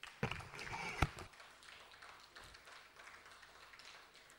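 Knocks and rustling picked up by a desk microphone as a person sits down at the desk. There is a sharp knock just after the start and a louder one about a second in, followed by faint room noise.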